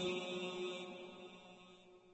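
The echoing tail of a held, chanted vocal note dying away steadily, with a faint tone lingering until it fades out near the end.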